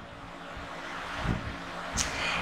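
A soft rushing noise that slowly swells, with a low thump about a second and a half in.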